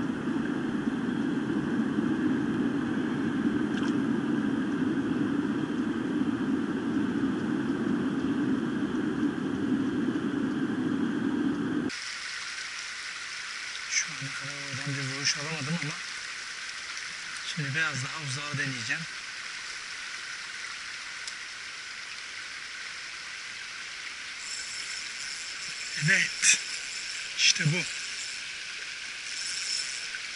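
Steady rush of stream water close to the microphone, which drops abruptly about twelve seconds in to a quieter, calmer flow. A man's voice speaks briefly twice soon after the drop, and a few sharp clicks come near the end.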